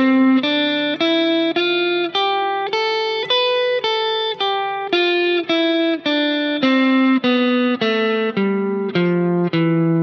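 Fender Stratocaster electric guitar playing a major scale one note at a time, a little under two notes a second. It climbs to the top of the pattern about four seconds in, then comes back down.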